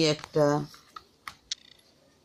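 A brief spoken syllable or two, then a few light clicks and taps about a second in as a plastic ruler is lifted and set down on paper.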